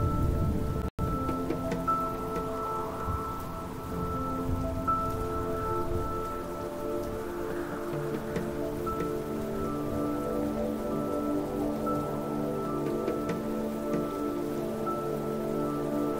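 Slow ambient background music of sustained, held chords over a steady rain-like patter. The sound cuts out for an instant about a second in.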